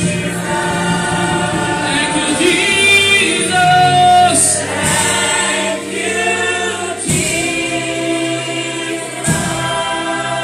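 Congregation singing a gospel worship song together, led by a woman singing into a microphone.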